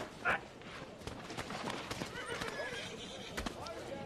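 A short vocal cry just after the start, then horses' hooves clopping and a horse whinnying, with indistinct voices behind.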